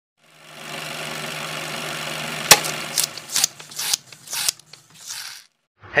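Intro sound effects: a steady whirring, machine-like hum fades in, then a sharp hit about two and a half seconds in. Four short swishes follow before it fades out just before the end.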